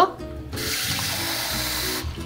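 Kitchen tap running into the sink: a steady rush of water that starts about half a second in.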